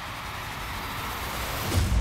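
A rising rush of noise, a trailer whoosh, that swells and ends in a deep boom about three-quarters of the way through.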